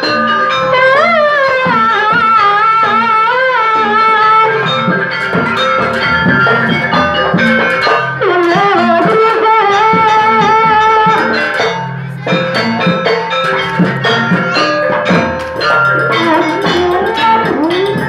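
Banyuwangi Gandrung dance music: drum strokes and metallic percussion under a wavering, sliding melody line. There is a short break about twelve seconds in.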